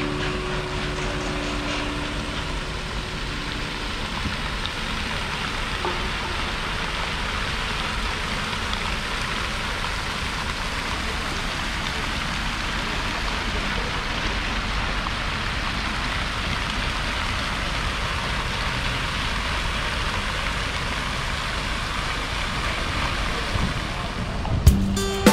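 Garden fountain's jets splashing into its basin: a steady rushing, rain-like hiss.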